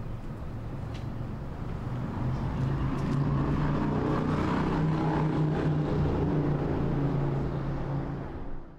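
A car engine running close by, growing louder about two seconds in and then holding a steady hum over street background noise.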